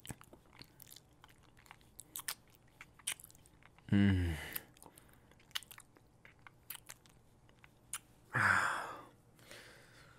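Close-miked ASMR kissing sounds: a string of wet lip smacks and mouth clicks. A man gives a low 'mm' that falls in pitch about four seconds in, and a breathy moan about eight and a half seconds in.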